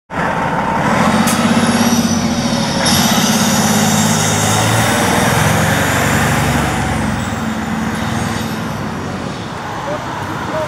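Fire engine's diesel engine running close by, steady and loud, dropping away after about seven seconds, with two sharp clicks about one and three seconds in.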